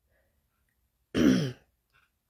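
A woman clears her throat once, briefly, about a second in.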